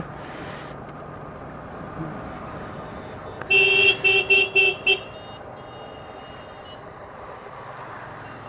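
A vehicle horn sounds a rapid string of short toots about three and a half seconds in, over the low, steady ride noise of the motorcycle.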